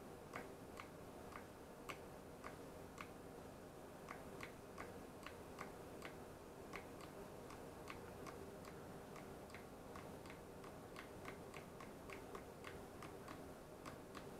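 Faint, rapid clicking of a toggle switch on a radio-control transmitter being flipped back and forth, about three clicks a second, to switch the quadcopter's flight controller into compass calibration mode.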